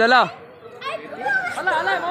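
Men's voices: a loud call at the start, then several men talking over one another.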